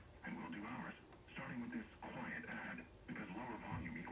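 Voice audio from an Icom IC-7300 transceiver's speaker, demodulated from an AM test signal made by a signal generator. The sound is thin and narrow-band, in phrases broken by short pauses.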